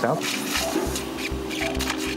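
Background music with a low pulsing beat and held tones, after one spoken word at the start.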